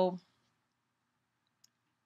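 Near silence: room tone, with one faint tick about three-quarters of the way through.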